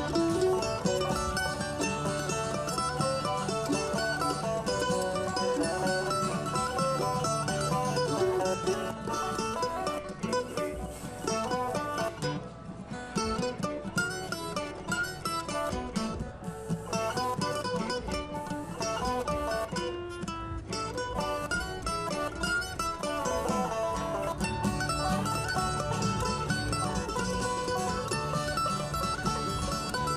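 Acoustic string band playing an instrumental passage of an old-time song: mandolin, acoustic guitar and banjo picking, with a bowed viola da gamba. The texture thins out in the middle and fills out again later.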